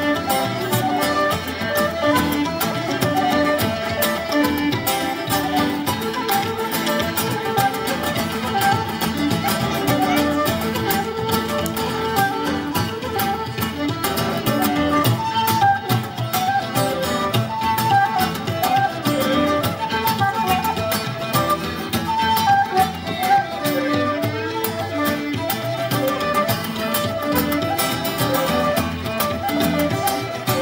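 Irish traditional band playing an instrumental passage live: a fiddle carries a quick melody over a steady bodhrán beat and strummed acoustic guitar.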